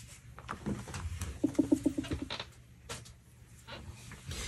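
A bird's low, quickly pulsed cooing call, about nine short notes lasting under a second, heard about one and a half seconds in. A few light taps come around it.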